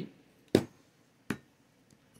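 Two sharp taps of a plastic scratcher against a scratch-off lottery ticket, about three-quarters of a second apart, the first louder.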